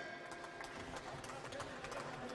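Faint boxing-hall ambience: a low crowd murmur with scattered light taps and shuffles from the boxers' shoes on the ring canvas.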